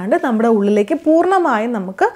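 A woman speaking continuously in Malayalam, with no other sound to be heard.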